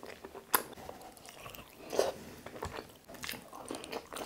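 Close-miked chewing of lechon paksiw, braised pork in thick sauce, with rice, with short sharp wet mouth clicks, the loudest about half a second, two seconds and three seconds in.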